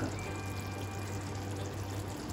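A thin stream of melted ghee poured from a measuring spoon into simmering chicken curry gravy, faint over a steady low hum.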